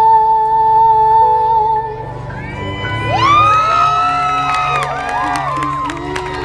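A female singer holds the song's final long high note with accompaniment, ending about two seconds in. The audience then breaks into whoops and cheers, with clapping starting near the end.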